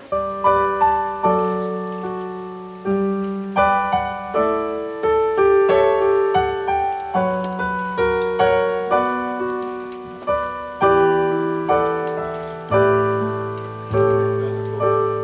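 Electric piano playing a slow, gentle piece of chords with a melody on top. A new note or chord is struck every half second to a second and each one fades away, and deeper bass notes come in near the end.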